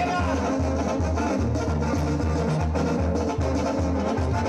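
Mexican banda-style brass band music played loud through a PA, with a heavy bass line pulsing in a steady rhythm under the brass and percussion.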